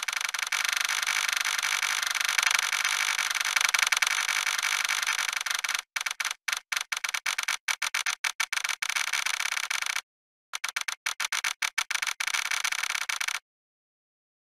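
Harsh, hissy, high-pitched digitally distorted audio with no bass, from about six seconds in chopped into rapid stutter cuts, then cutting off suddenly near the end.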